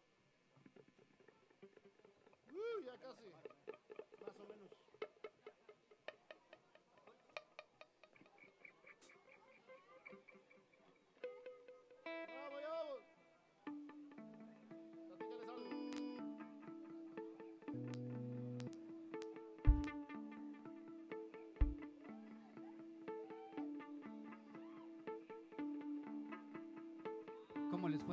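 Electric guitar played through effects pedals: scattered single notes and pitch bends while the sound is checked between songs. About halfway through, a steady repeating pattern of notes sets in, with two deep thumps a couple of seconds apart.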